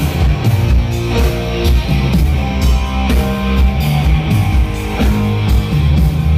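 Rock band playing live through a PA system: guitar, bass and drum kit with a steady beat, in an instrumental stretch with no singing.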